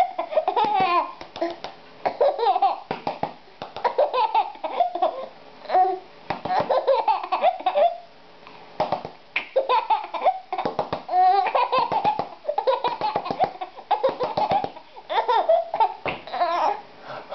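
A baby laughing in repeated bursts, with short gaps between them and a brief lull about halfway through.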